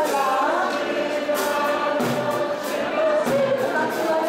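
An ensemble of piano accordions plays sustained chords while a man sings a Christian song over them.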